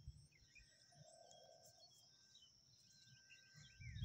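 Near silence: faint outdoor background with a few faint bird chirps.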